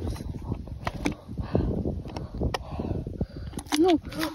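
Irregular knocks and scrapes as a golf club and golf ball rattle inside a mini-golf last-hole ball-capture housing.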